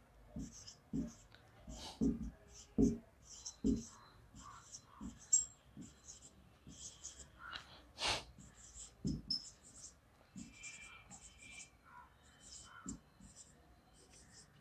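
Whiteboard marker writing on a whiteboard, letter by letter: a quick run of short, separate strokes.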